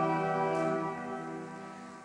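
A choir's sung response ending on one long held chord that fades away.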